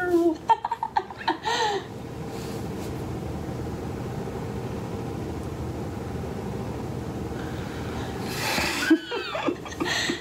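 A man and a woman laughing together for about the first two seconds, then a steady even hum with no voices for several seconds, then laughter again near the end.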